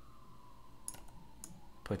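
A few faint, sharp computer mouse clicks, clustered about a second in, as a shape is clicked, dragged and released.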